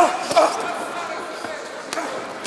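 Two gloved punches landing in a close exchange between boxers, sharp hits right at the start and about half a second later, with spectators shouting over the murmur of a crowd in a large hall.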